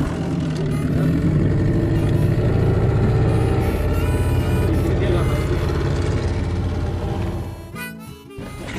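Small outboard motor on an inflatable dinghy running steadily under way, a continuous low droning hum that fades out near the end.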